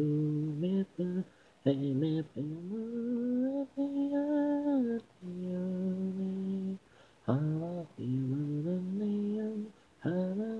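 Unaccompanied singing voice: an isolated a cappella vocal track with no instruments. It sings held notes that glide up and down, in phrases broken by short pauses for breath.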